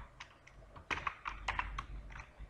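Typing on a computer keyboard: a handful of separate keystrokes, unevenly spaced.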